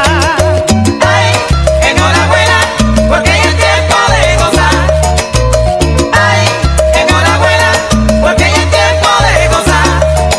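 Salsa music, a full band recording, with a bass line in short repeated notes and a short high note repeated evenly to keep time.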